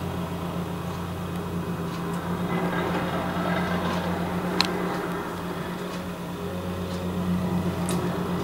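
Vibratory plate compactor running as it compacts fresh asphalt: a steady low hum, with a single light click just past the middle.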